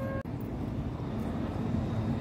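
The last note of a street musician's wind-instrument melody, cut off a moment in, followed by a steady low outdoor rumble with no clear single source.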